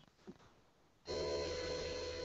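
Near silence for about a second, then a steady electrical hum with several pitched tones cuts in abruptly and holds at an even level: mains buzz on the microphone and sound-system line.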